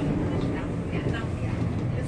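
Seoul Metro Line 2 electric train running between stations, heard from inside the car by the door: a steady low rumble of wheels and running gear.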